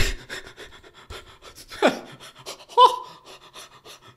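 A man laughing in rapid, breathy, panting gasps, with a short falling cry about two seconds in and a brief higher-pitched sound near three seconds.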